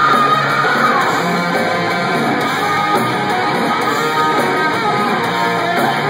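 A live rock band playing loud, led by a hollow-body electric guitar through stacked amplifiers, with bass guitar and drums. A held high note slides down about a second in.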